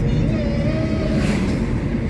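Car driving on a road, heard from inside the cabin: a steady rumble of engine and road noise, with a faint wavering tone during the first second.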